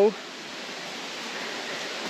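Steady rushing of flowing water from a nearby creek or waterfall, an even hiss that swells slightly.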